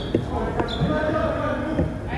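Basketball bouncing on a hardwood gym floor, a couple of sharp knocks in the first second, under people talking in the gym.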